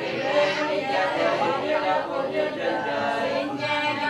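Many voices chanting prayers together in a sung recitation, the way Vietnamese Catholics pray aloud at a wake. The chant runs on with no break.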